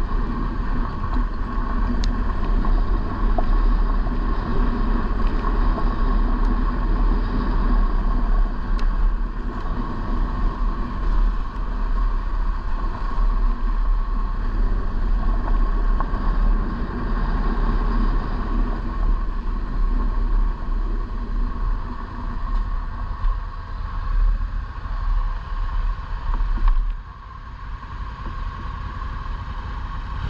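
Adventure motorcycle riding along a gravel road, its engine running steadily under way with a heavy low rumble of wind and road noise. About 27 seconds in the rumble drops away suddenly and the sound gets quieter as the bike slows to a stop.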